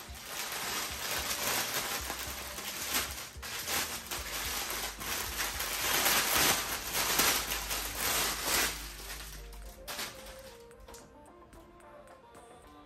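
Clear plastic bag crinkling and rustling as a plush toy is worked out of it, dying away about ten seconds in. Soft background music runs underneath and is heard alone near the end.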